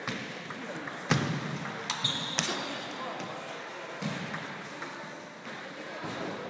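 Celluloid table tennis ball clicking off paddles and the table in a rally: a series of sharp clicks, the loudest about a second in, with voices murmuring in a large hall behind.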